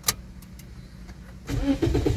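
A Toyota car's engine being started with the key: a sharp click of the ignition at the start, a short pause, then about one and a half seconds in the engine starts and settles into a low running rumble.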